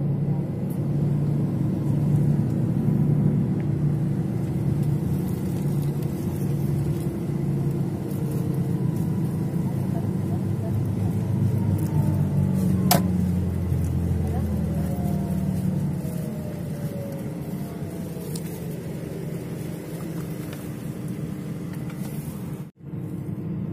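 Steady low engine and road rumble heard from inside a moving bus, with one sharp click about halfway through. A faint whine falls in pitch a little after that.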